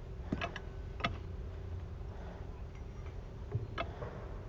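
A playground balance disc giving a few sharp clicks and knocks as someone stands on it and shifts weight: a quick pair near the start, another about a second in, then a dull knock and a click near the end, over a steady low rumble.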